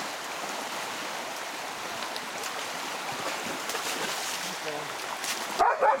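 Fast-flowing river water rushing steadily, with the splashing of a large dog swimming through the current.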